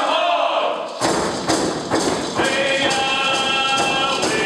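Ts'msyen song with group singing over a steady beat on hand-held frame drums. The drumming drops out briefly and comes back in about a second in.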